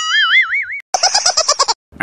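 Cartoon sound effect: a wobbling 'boing' tone lasting under a second, then a quick run of rapid, evenly spaced pulses like a sped-up giggle.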